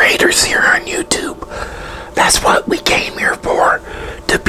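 A man whispering, in a run of short phrases, close to a clip-on lapel microphone.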